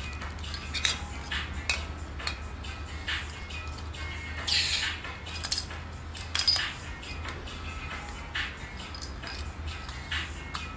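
Small metal clicks and clinks as a compact canister gas stove is handled on its gas canister and its folding pot-support arms are swung open, with a brief hiss just before the middle.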